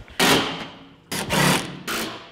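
Power driver run in two short bursts of about half a second each, fixing a crack-climbing volume to the climbing wall.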